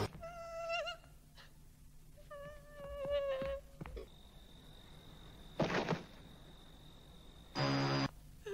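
Horror-film soundtrack: two short high wavering cries, then a steady high tone held for several seconds, broken by two sudden loud bursts, the second near the end.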